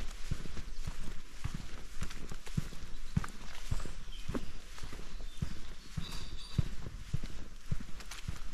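Footsteps of a person walking at a steady pace on a dirt woodland path scattered with dry leaves and twigs: low thuds, about two steps a second.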